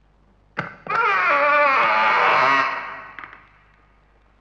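A door latch clicks, then a wooden door's hinges give a long, loud wavering creak for about two seconds as the door swings open, fading out near the end.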